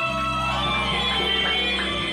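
Live band music played loud: a held melody line over a steady low note, with drum strokes coming in about a second in.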